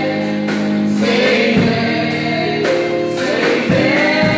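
Live gospel worship music: a woman singing lead into a microphone, with a choir of backing singers joining in.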